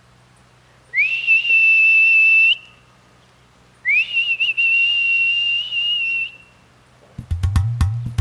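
Two long, high whistle notes, each sliding quickly up and then held steady, the first about a second and a half long and the second about two and a half seconds with a slight waver near its start. Near the end, music with drums and percussion starts.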